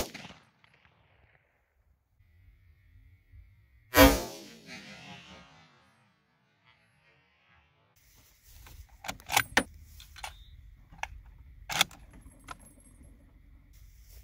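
Mossberg Patriot bolt-action rifle in .270 Winchester firing: a sharp crack right at the start, then a louder shot about four seconds in whose report rings out and fades over about a second. From about eight and a half seconds on come a series of metallic clicks and knocks as the bolt is worked and the rifle handled.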